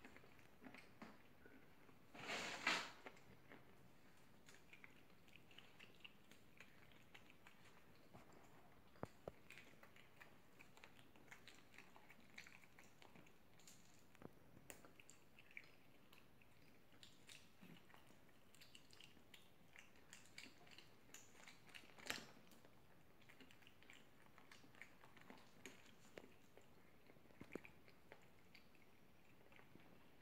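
Near silence with faint, scattered clicks and crunches of biscuit being chewed. There is a brief louder noise about two seconds in and a sharp click about 22 seconds in.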